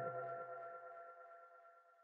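The closing chord of a short intro jingle rings out as a few held tones and fades away within about a second, leaving silence.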